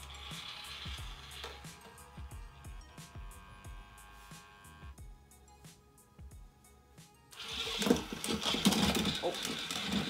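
Background music with a steady beat; about two-thirds of the way through, a louder whirring joins it, the small motors of an app-controlled toy robot driving it along.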